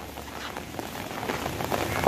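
Rain falling steadily: an even hiss that grows slightly louder toward the end.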